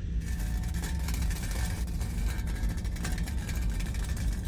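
A steady low engine-like rumble with a dense crackle over it.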